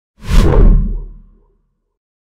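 A whoosh sound effect with a deep boom underneath, the sting for a logo reveal: it swells in just after the start and dies away over about a second.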